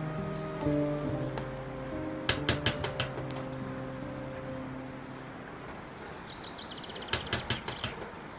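Two bouts of quick knocking on a door, about five raps each: one about two seconds in and one near the end, over background music.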